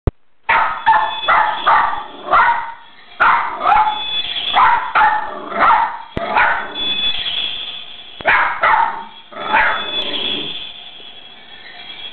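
West Highland white terrier barking in quick runs of short barks, about two or three a second, with brief pauses between runs; the barking tails off near the end.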